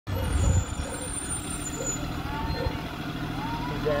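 School bus diesel engine running with a steady low rumble as the bus moves along the road, loudest in the first half-second.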